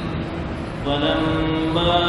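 A man reciting the Quran in a slow, melodic chant. After a brief pause, his voice comes back about a second in on a long drawn-out note.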